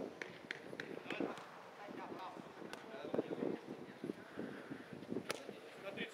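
Football players' shouts and calls across the pitch, with a few sharp ball kicks scattered through.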